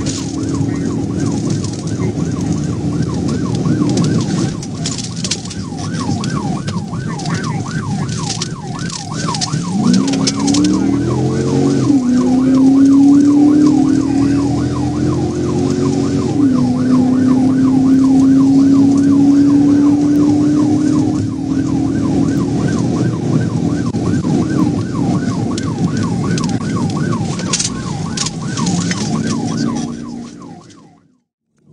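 Police car siren on a fast-cycling yelp during a high-speed pursuit, over road and wind noise. Partway through, the car's engine note climbs and drops back twice as it gathers speed, then holds high for several seconds.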